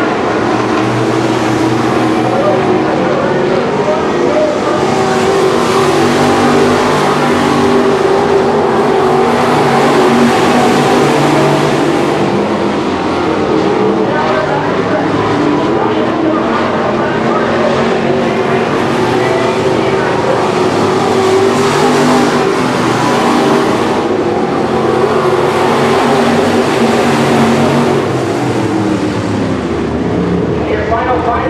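Several IMCA SportMod dirt-track race cars' V8 engines running at racing speed around the oval, the sound swelling and easing as the cars pass.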